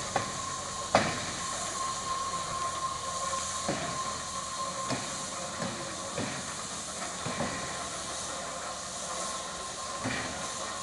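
ČSD class 516.0 steam locomotive hissing steam while it turns on a turntable, with a steady high tone under the hiss. Sharp knocks and clanks from the running gear and turntable come every second or so, the loudest about a second in.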